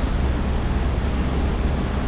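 A steady low rumble with a hiss over it, as loud as the speech around it and with no clear rhythm or tone.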